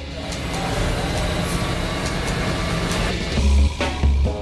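Sound effect from an animated show's soundtrack: a dense, steady electronic whooshing noise that slowly grows louder. About three seconds in, heavy bass music comes in.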